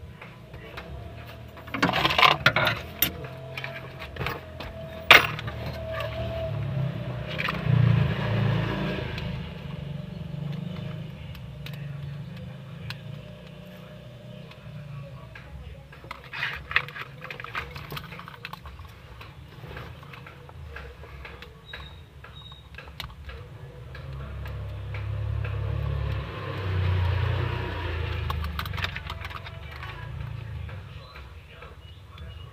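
Plastic clicks and rattles of a wiring-harness connector being unplugged and a car's under-dash fuse box being handled, with a sharp click about five seconds in. A low rumble swells twice in the background, around eight seconds and again near the end.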